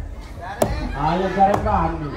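A man's voice over a stage sound system, with three sharp clacks struck during it, a little under a second apart.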